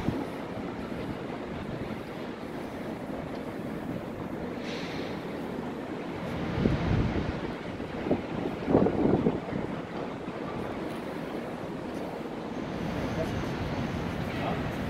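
Steady wind noise on the microphone over a general outdoor city background, with a couple of louder surges about six and nine seconds in.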